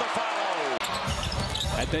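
Broadcast NBA arena sound: crowd noise after a play cuts off abruptly under a second in, followed by arena crowd hum with a basketball being dribbled on the hardwood court.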